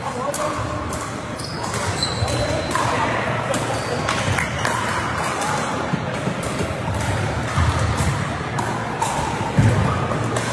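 Pickleball paddles hitting a plastic ball in rallies, with sharp, irregular hits over the chatter of players' voices in a large sports hall.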